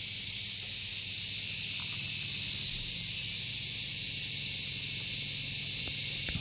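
Steady high-pitched outdoor background hiss with a faint low hum, unchanging throughout.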